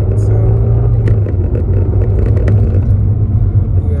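Steady low rumble of a car in motion, heard from inside the cabin: engine and road noise.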